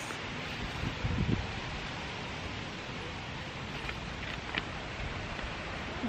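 Steady rustle of wind through garden foliage, with a couple of soft rustles about a second in as granular blood, fish and bone fertiliser is tipped from a metal shovel around courgette plants.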